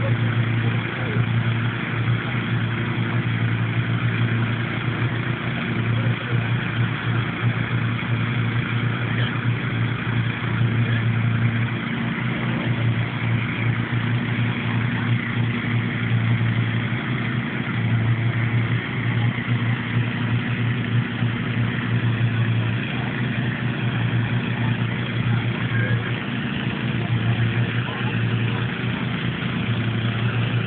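Hot-air balloon inflator fans running steadily: a constant rush of blown air over a low engine hum that drops back and returns several times.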